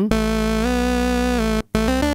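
Roland SH-101 monophonic analog synthesizer holding one note whose pitch is bent up about a whole tone with the pitch bender about two-thirds of a second in and brought back down, before the note cuts off. Short new notes begin near the end.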